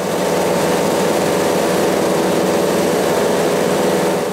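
Asphalt paver running steadily as it lays fresh asphalt over the milled road surface: an even, dense engine and machinery noise with no change in pitch.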